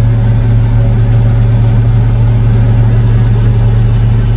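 Tractor and combine harvester diesel engines running steadily together at close range, a loud, even drone with a strong low hum that does not change in pitch.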